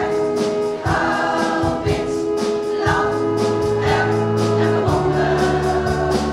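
Women's choir singing a song, with an accompaniment of low bass notes and a steady beat.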